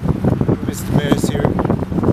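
Wind rumbling and buffeting on a camera microphone outdoors, with indistinct voices in the background.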